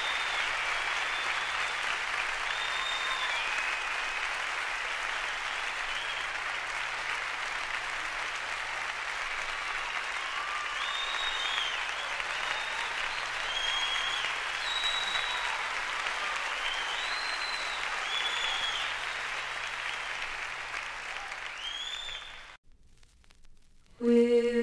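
Steady applause from a crowd, with short high whistle-like chirps heard over it now and then, cutting off suddenly near the end.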